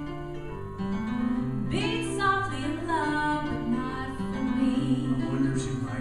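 Live acoustic band playing a song's introduction: held keyboard chords with acoustic guitar, and a melodic line that glides in pitch about two seconds in.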